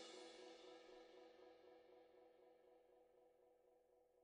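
The tail of a drum-kit music track fading out, a cymbal ringing away over the first second and a half, then near silence.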